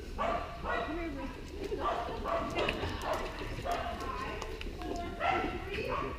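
A dog barking repeatedly, roughly once or twice a second, with people's voices mixed in.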